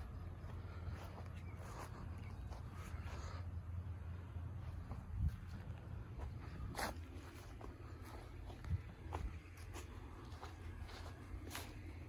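Footsteps through grass and the rustle of a handheld phone being carried, with a few sharper clicks, over a steady low rumble.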